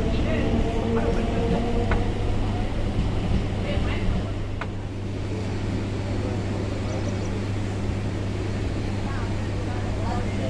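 Steady low electrical hum from a halted electric multiple unit (EMU) suburban train, with passengers' voices in the background. A held tone fades out in the first two seconds, and the level dips slightly about halfway through.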